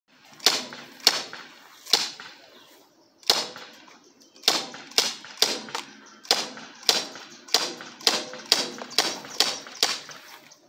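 BB pistol fired again and again, about eighteen sharp shots. The first few are spaced out, then there is a short pause, and from about four and a half seconds in a quick, even string follows at roughly two to three shots a second.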